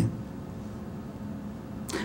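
A pause in a read-aloud poem: quiet room tone with a faint steady hum. A man's voice starts again right at the end.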